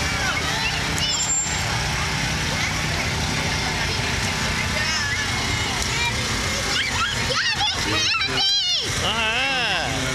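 A parade float's vehicle engine rumbling steadily as it passes, with people's voices over it; high, wavering voices, like excited children calling out, grow loudest near the end.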